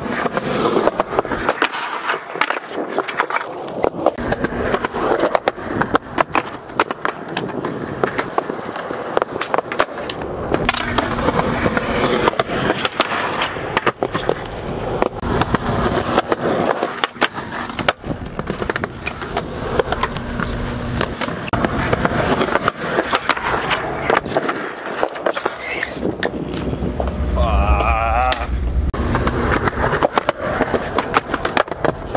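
Skateboards rolling on a concrete sidewalk, with repeated clacks and knocks of boards popping, landing and hitting a concrete bench ledge as tricks are tried over and over.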